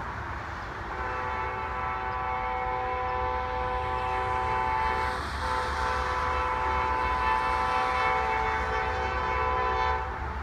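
Horn of an approaching Amtrak diesel locomotive, a chord of several tones, sounded in two long blasts: the first starts about a second in, there is a brief break just past the middle, and the second runs on. A steady low rumble lies underneath.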